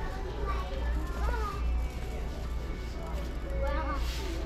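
Large-store ambience: faint background music with held notes, distant indistinct voices and a steady low hum.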